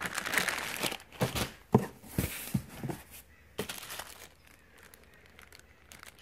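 Clear plastic bags crinkling as bagged cables and parts are handled, with a few sharp light clicks among the rustle, dying down to near quiet for the last couple of seconds.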